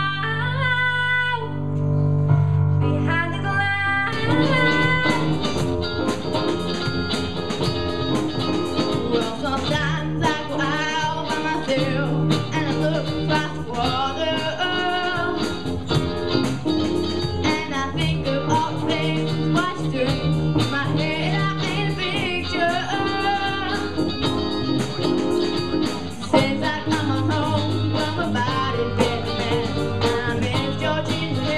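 A young female voice singing over sustained keyboard chords. About four seconds in, this switches abruptly to a live rock band with electric guitars, bass, drum kit and keyboard, with a girl singing lead.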